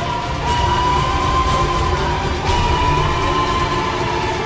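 Trailer score music: a sharp hit about every two seconds, each one starting a high held tone that rises slightly, over a constant low rumble.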